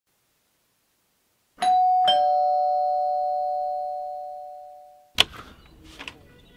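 Two-tone doorbell chime: a high note then a lower one about half a second later, each ringing on and slowly fading. A sharp click follows about five seconds in.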